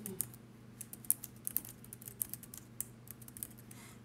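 Typing on a keyboard: a run of light, irregular keystroke clicks, several a second, over a faint low hum.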